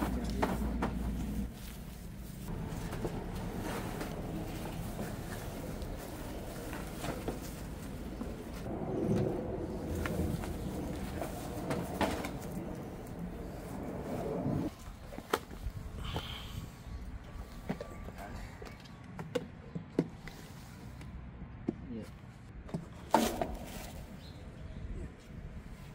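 Scattered knocks, scrapes and gravel crunching as a heat pump's outdoor unit is pushed into place on its plastic pad and levelled on its riser feet. The handling is busiest in the middle, and a sharp knock comes near the end.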